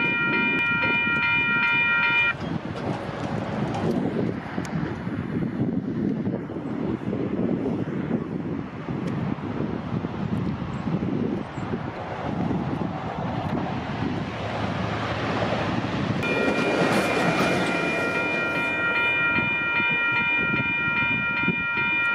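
Diesel-electric passenger locomotive, a Siemens Charger SC-44, sounding its multi-note air horn as it approaches: one long blast cutting off about two seconds in, and another starting about sixteen seconds in and held through the end. In between, the engine and wheels on the rails give a steady rumble that grows into a louder clatter as the train comes close, around sixteen to nineteen seconds in.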